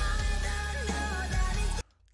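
Live rock band cover of a pop song playing back: a woman singing over electric guitar and heavy bass. The music cuts off suddenly near the end as the playback is paused.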